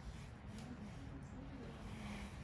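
Faint, indistinct voices over quiet room noise.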